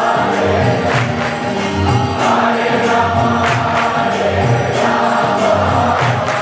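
Devotional kirtan: a large crowd singing a chant together over a steady rhythmic beat of drums and hand cymbals.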